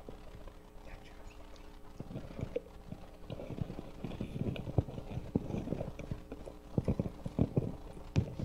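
Footsteps and handling bumps on a stage, picked up by open microphones: irregular low thumps and knocks, busier in the second half and clustered near the end, over a steady low hum from the sound system.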